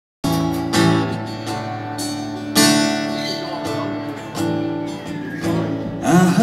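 Live band intro led by an acoustic guitar: chords strummed and left ringing, with a few fresh strums and a gliding guitar note near the end, before the singing comes in.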